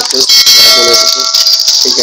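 Notification-bell chime from a YouTube subscribe-button animation, ringing as the bell icon is clicked: a bright chord of several tones that starts about half a second in and dies away within about a second.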